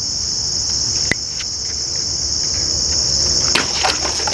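A machete slicing through a free-standing, water-filled plastic bottle near the end: a quick slash with a spray of water, which comes out as a clean cut. Under it runs a steady high chorus of crickets, with a single click about a second in.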